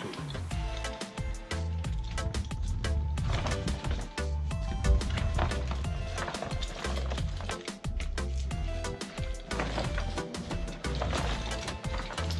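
Background music with a repeating bass line. Over it, scattered clicks and knocks of a scuba BCD and its cylinder strap being handled.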